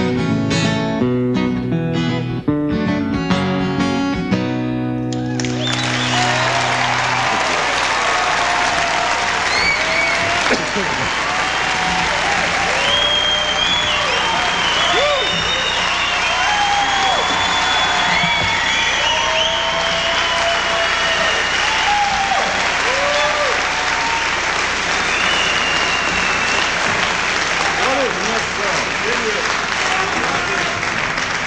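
Acoustic guitar closing a song with a few strummed chords, the last low chord ringing briefly. About five seconds in, a concert audience breaks into loud, sustained applause with cheering and whistles.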